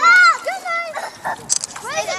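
A dog barking, a run of short, high-pitched barks, the loudest right at the start, with people's voices around it.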